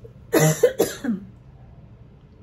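A woman coughing, a short fit of two or three coughs about a third of a second in and over within a second. It is a post-nasal cough, which she puts down to the weather changing.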